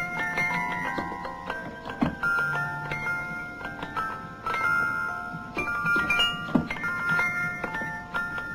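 A music-box melody of quick, high plinked metal notes, each ringing briefly, with a couple of sharper clicks about two seconds in and again past six seconds.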